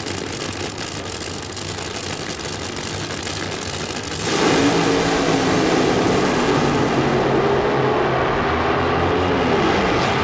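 Two nitro Funny Cars racing down a drag strip. Steady noise at first, then a sudden surge of engine noise about four seconds in. Near the end the engine tones fall in pitch.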